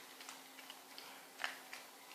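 Faint, irregular clicks of a Yorkshire terrier crunching hard dry kibble, with one sharper click about one and a half seconds in.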